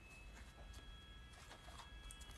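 Near silence: faint room tone with a low hum.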